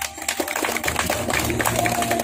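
Light clapping from a small group of people: many quick, uneven claps, with a faint steady hum underneath.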